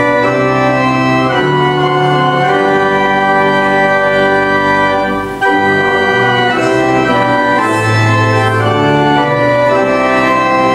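Church organ playing a hymn in sustained chords that change every second or so, with a short break between phrases about five seconds in.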